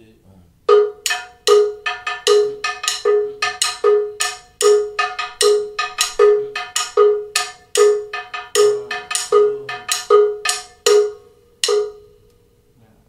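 Bongo bell (campana) playing the son bell pattern: sharp ringing metal strokes, about two to three a second with accents, alternating a less syncopated measure with a more syncopated one in step with the clave. It starts about a second in and stops just before the end.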